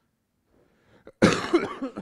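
A man coughing close to a handheld microphone: near silence, then a sudden loud cough about a second in, trailing into a few smaller coughs.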